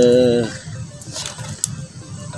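A man's voice drawing out the end of a word, then a quieter stretch with a couple of light clicks from handling a cardboard box of instant noodles, over soft background music.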